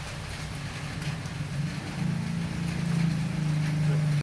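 A motor vehicle engine running with a steady low hum, getting louder about two seconds in.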